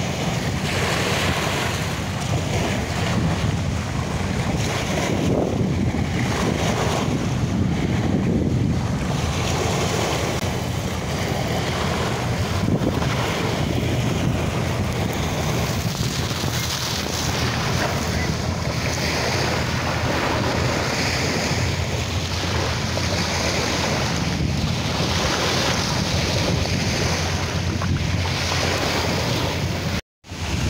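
Small waves breaking and washing up a coarse-sand beach, the wash swelling and easing every few seconds, with wind buffeting the microphone as a steady low rumble.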